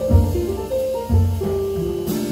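Live ensemble music: an instrumental passage for cellos with a jazz rhythm section of double bass and drums, a melody stepping between notes over low bass notes that pulse about once a second.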